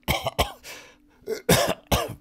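An elderly man, ill in bed, coughing several short times, with the loudest coughs about a second and a half in.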